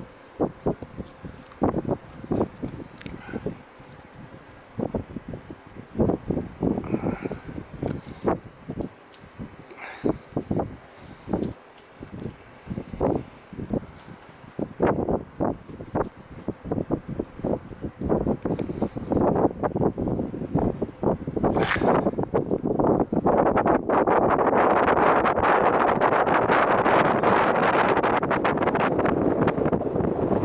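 Wind buffeting the microphone in irregular gusts. About two-thirds of the way through, the gusts turn into a steady, loud rush.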